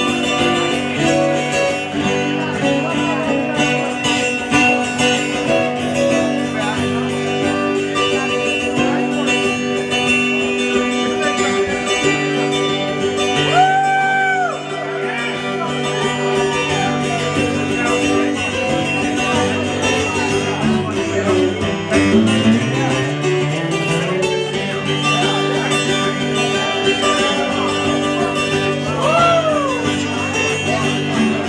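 Twelve-string acoustic guitar played solo live through the PA, a steady instrumental passage with ringing chords.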